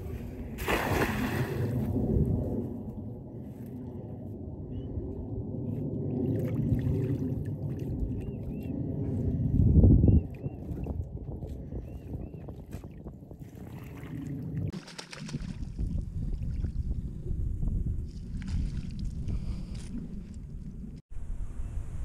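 A cast net thrown into shallow river water lands with a splash about a second in. It is then hauled back in by its rope, with water sloshing and gurgling over a steady low rumble.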